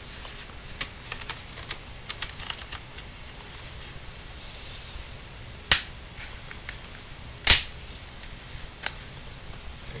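Plastic snap-fit clips of an Acer Aspire One netbook's case coming loose as the two halves are pried apart. Light ticks and scrapes in the first few seconds, then two sharp clicks a little under two seconds apart, and a smaller click near the end.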